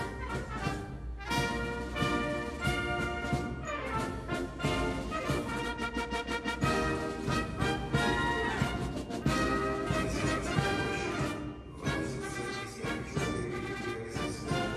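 Brass-led band music, trumpets and trombones with a full ensemble, playing continuously with many quick notes.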